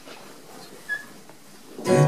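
Faint room noise with a brief high tone about a second in, then acoustic guitars come in strumming loudly near the end as the song starts.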